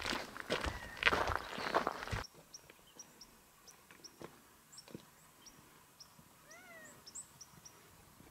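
Footsteps crunching on a rocky gravel trail for about the first two seconds. Then it goes quiet, with scattered short, high bird chirps and one short rising-and-falling call near the end.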